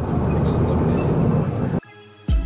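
Steady rushing road and wind noise from a car travelling at highway speed, cutting off abruptly near the end.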